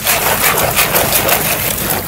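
Water spraying to wash mud off farmed oysters: a steady rushing noise.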